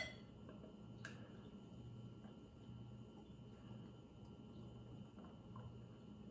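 Very faint pour of ale from a glass bottle into a pint glass, close to silence, over a low on-off hum. There is one faint tick about a second in.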